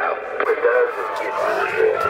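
Voices coming in over a CB radio speaker, thin and narrow in tone and hard to make out as words.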